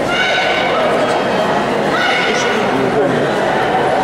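Two high-pitched shouts over the steady chatter of spectators in a large sports hall: a longer one at the start and a shorter one about two seconds in, typical of a karate bout's kiai or of coaches yelling at the fighters.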